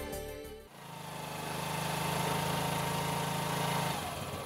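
Theme music tails off, then a steady low buzzing drone swells in and holds, with a faint high tone held above it.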